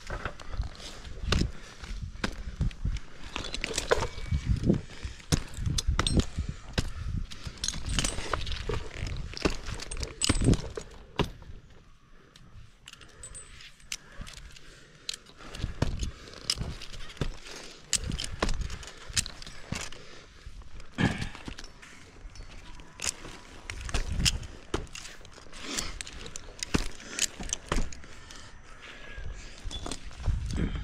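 A tree climber's rigging hardware clinking and jingling, with irregular knocks, thumps and scuffs as he shifts his ropes and his position on the trunk; no saw is running.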